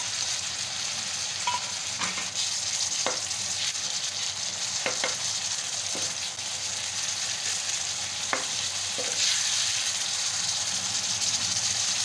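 Sliced onions and freshly added chopped tomatoes sizzling in oil on a flat iron tawa, a steady hiss, with a few short sharp clicks scattered through it.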